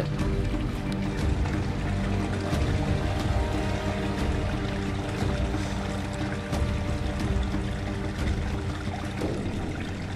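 Background music with slow, held notes that change now and then.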